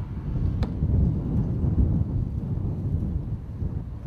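Wind buffeting the microphone, a fluctuating low rumble, with one sharp click about half a second in.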